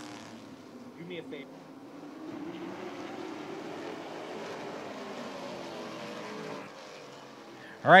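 Several vintage stock-car engines running at racing speed in a close pack: a steady drone that swells from about two seconds in and drops away shortly before the end.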